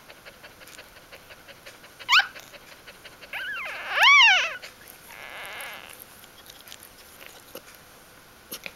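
Newborn Bichon Frisé puppy squealing: a short rising squeal about two seconds in, then a louder, longer cry that rises and falls in pitch about four seconds in, followed by a softer rasping sound.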